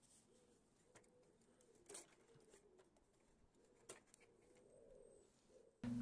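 Near silence: faint room tone, with two faint clicks about two and four seconds in.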